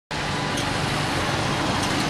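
Steady city street traffic, mostly motorbikes and cars running along the road, with a low engine hum underneath.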